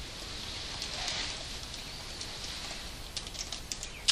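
Steady hiss of room noise in a pause between talk, with a few light clicks or rustles in the last second.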